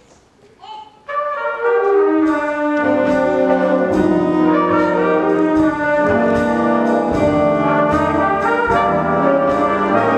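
A jazz big band comes in about a second in, its brass and reeds playing full sustained chords over bass and drums, opening a slow tune. At the start there is a falling line in the horns.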